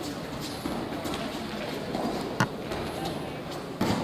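Background voices murmuring in a large hall, with two sharp slaps, a loud one a little past halfway and another just before the end.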